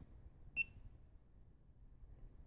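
GoPro Hero 2 action camera giving one short, high beep about half a second in as its front mode button is pressed; otherwise faint room tone.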